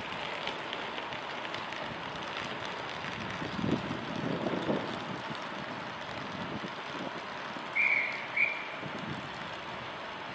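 LNER A4 three-cylinder steam locomotive approaching at a distance with its train, a rumble that swells a few seconds in, over steady wind noise. Two short high-pitched peeps near the end are the loudest sounds.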